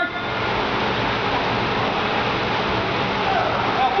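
Steady rushing background noise of a large indoor sports hall, with faint, distant voices near the end.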